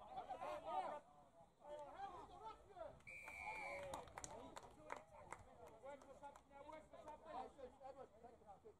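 Faint, overlapping voices of players and spectators calling out at a rugby league ground, with one short, steady, high whistle about three seconds in and a few sharp claps or knocks just after it.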